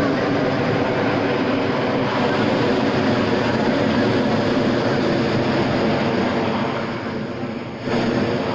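Hot air balloon's propane burner firing in a long, loud, steady blast, easing off shortly before the end and then cutting back in sharply.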